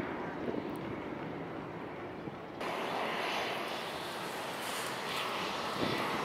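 Jet engine noise of an Airbus A321 (CFM56 engines) climbing away after takeoff. About two and a half seconds in, it cuts abruptly to a louder, hissier jet sound from a second Airbus A321 (IAE V2500 engines) moving along the runway.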